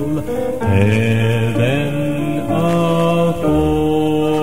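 Male gospel quartet singing in close harmony, holding long chords that change every second or so over a low bass part.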